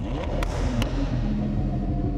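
Lamborghini Huracán drift car's engine running as the car rolls slowly forward out of the workshop, with a few light clicks.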